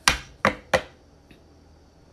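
Three sharp knocks close to the microphone, all within the first second, as the photo and phone are handled.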